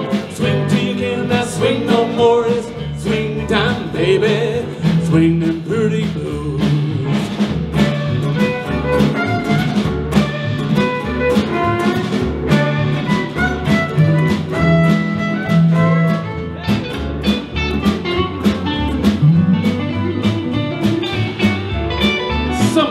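Live western swing band playing an instrumental break: fiddle, steel guitar, guitars and drums over an upright bass walking steadily.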